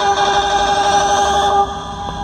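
Music playing loud through a car audio open-show wall of Genius G Pro Audio midrange speakers. A held chord of steady, horn-like tones stops about one and a half seconds in, and a softer melody follows.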